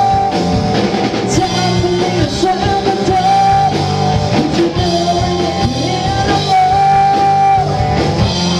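Live rock band playing: electric guitar, bass guitar and drum kit, with a sung vocal line over them.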